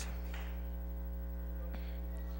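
Steady electrical mains hum, a low drone with a row of overtones, picked up in the sound system's feed. A short rustle comes just after the start, and a faint click near the end.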